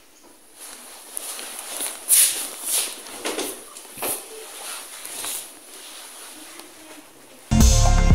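Footsteps and clothing rustle picked up by a body-worn camera. About four seconds in comes a sharper clack as the lever handle of a locked office door is pressed. Background music starts abruptly near the end.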